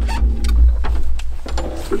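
A baitcasting reel being wound in as the lure is retrieved, with a scattered series of sharp clicks over a steady low rumble.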